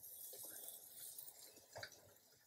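Faint, steady sizzling and soft squishing as a silicone spatula stirs masala-stuffed small eggplants in hot oil in a steel kadhai.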